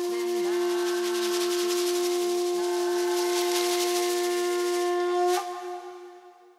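Conch shell horn blown in one long, steady note, with a lower wavering tone and a rattling hiss beneath and above it. All of it cuts off with a sharp click a little after five seconds in and dies away.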